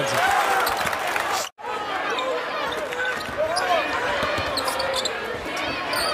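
Basketball game sound from the court: the ball bouncing over steady arena crowd noise, cut off by a brief dropout about a second and a half in.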